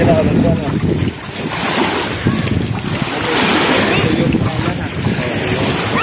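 Small waves washing on a sandy shore, with wind buffeting the microphone and faint voices in the background.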